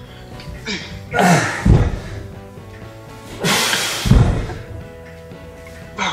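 Background music with steady tones, with three forceful breaths from a man doing push-up rows with dumbbells, about two and a half seconds apart. Each breath falls in pitch like a grunt and comes with a low thud.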